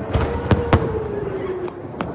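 Sharp explosion cracks from a rocket barrage, two in quick succession about halfway through, over a steady wailing tone that slowly falls in pitch.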